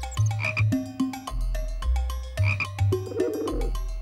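Upbeat background music with a repeating bass line and percussion. A short low rattling sound effect comes in near the end.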